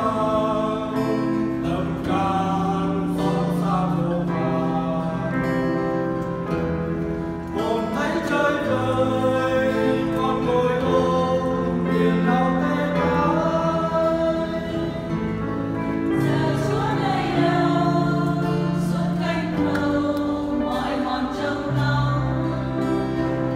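Church choir singing a slow hymn in parts, in long held notes, accompanied by acoustic guitar and a Yamaha electronic keyboard.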